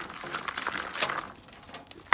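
Soil and plant debris rustling and crackling as Chinese artichoke tubers are dug out of a raised bed, with a few sharp clicks about a second in.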